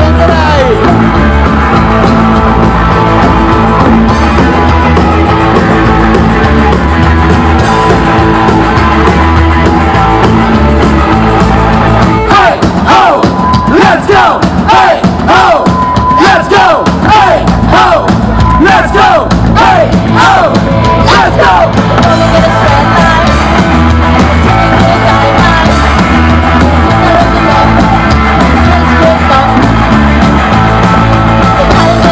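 Punk rock band playing live and loud on electric guitar, bass guitar and drum kit. About twelve seconds in, a stretch of fast sliding, bending high notes runs for some ten seconds before the steady band sound carries on.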